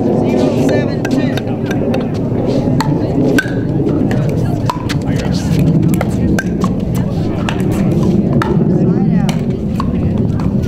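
Pickleball rally: sharp, hollow pops of paddles hitting the plastic ball and the ball bouncing on the court, coming irregularly several times a second, over a steady background murmur.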